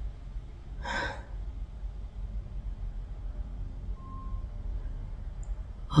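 A woman's single audible breath, a short sigh or exhale about a second in, over a low steady background hum.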